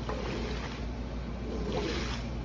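Squeegee pushing water across a soaked hand-knotted wool rug: wet swishing strokes, one at the start and another about one and a half seconds in, over a steady low hum.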